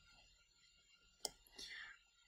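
Near silence with a single sharp click about a second in: a computer mouse button clicked while selecting text. A faint soft sound follows near the end.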